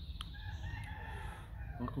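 A rooster crowing faintly: one long call of about a second and a half, held at a steady pitch.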